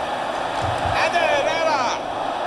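Televised soccer match: steady stadium crowd noise, with a voice over it in the second half.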